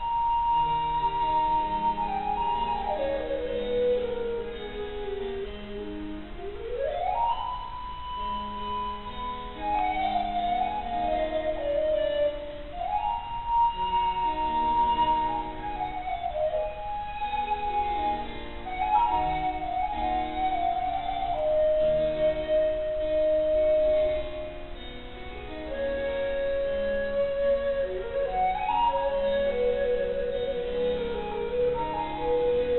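Voice flute (a tenor recorder in D) playing a baroque sonata melody over harpsichord accompaniment, with rapid scale runs up and down between long held notes.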